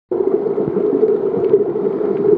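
Muffled underwater sound picked up by a camera submerged on a coral reef: a steady low rush with a few faint ticks.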